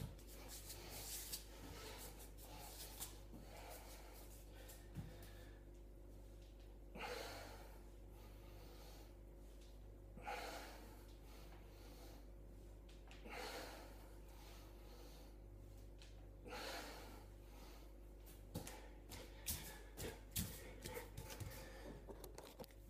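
A man breathing hard during floor exercise: faint, sharp breaths out, one every three seconds or so. A few light knocks near the end.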